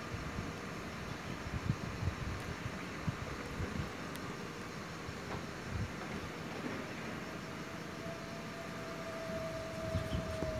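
Steady outdoor background noise: a hiss with scattered low rumbling thumps, and a faint held tone coming in at about eight seconds in.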